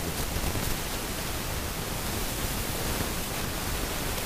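Steady, even hiss of background noise with no clear events in it, in a pause between a speaker's words.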